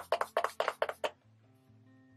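A hand-pump spray bottle misting the face in a quick run of about six or seven short sprays that stop just after a second in. Quiet background music with held notes follows.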